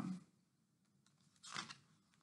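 A picture book's paper page being turned by hand: one brief rustle about one and a half seconds in, otherwise near silence.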